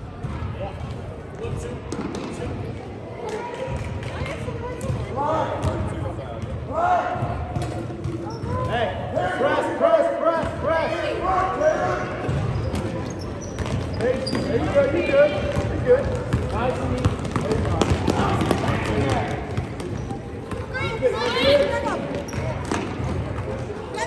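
A basketball being dribbled and bounced on an indoor gym court during a youth game, with players' feet moving on the floor and voices calling out across the hall.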